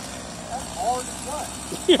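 A steady engine hum runs in the background under a faint, distant voice; a loud spoken word comes right at the end.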